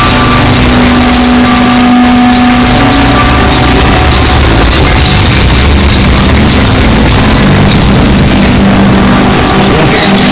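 Loud, heavily distorted, clipped electronic audio: a constant dense noise with a heavy low drone and a few held tones, the audio track of a pitch-shifted logo effect.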